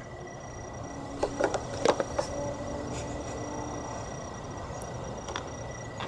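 A few light plastic clicks and taps, about one to two and a half seconds in, from a battery's pried-off vent-cap cover being handled. They sit over a faint steady background with a thin high-pitched tone.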